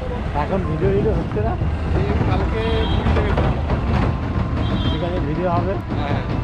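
Conversational speech from a few people, heard over a steady low rumble from road traffic or wind on the microphone.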